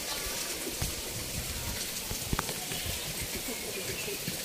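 A steady hiss of water at an outdoor swimming pool, with low bumps from the phone being handled and a sharp click a little past halfway.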